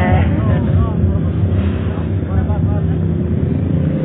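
People's voices talking over a loud, steady low rumble.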